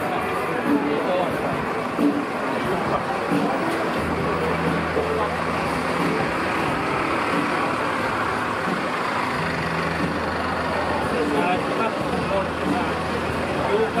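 Street traffic: a vehicle engine idling with a low steady hum that starts about four seconds in, under the voices of people talking.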